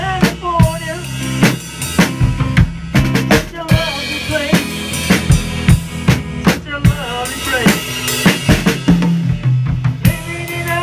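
A live band playing a pop-rock song: a drum kit keeps a steady beat of about two strokes a second, under electric guitar.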